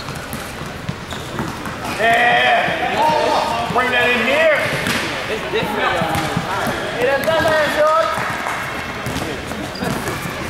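A basketball bouncing on a gym floor as players dribble, with loud, indistinct voices shouting over it in a large gym hall.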